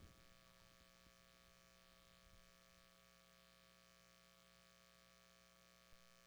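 Near silence with a faint steady electrical hum, and a faint tap near the end.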